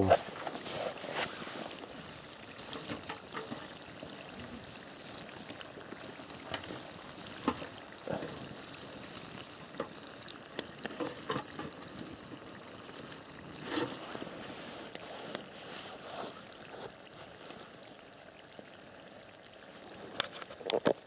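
Liver and onions frying in a pan over a campfire: a faint, steady sizzle with scattered pops and crackles.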